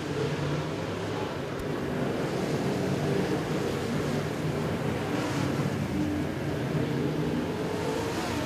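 Several dirt-track modified race cars' V8 engines running at racing speed around the track. The engines blend into a steady drone with several pitches wavering slightly.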